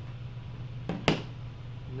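Two short clicks close together about a second in, the second louder and sharper: a TV remote control being set down on the television's metal back panel, over a low steady hum.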